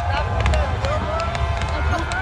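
Crowd of people calling and shouting in the open, over a steady low rumble, with a few faint sharp cracks.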